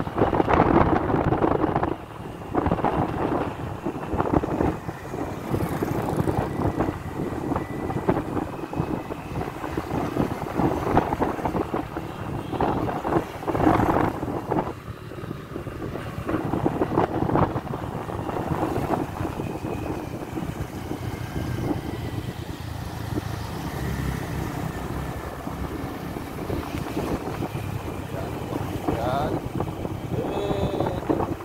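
Wind buffeting the microphone of a camera carried on a moving motorcycle, a steady rush that swells and dips in gusts, with the motorcycle's running noise underneath.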